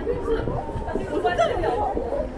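Passers-by talking close by, their chatter loudest a little past the middle.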